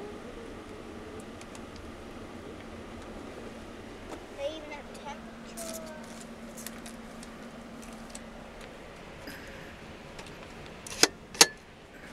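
Steady running noise of a passenger train heard from inside a compartment, with a faint steady hum through the middle and scattered light clicks. Two sharp, loud clicks near the end.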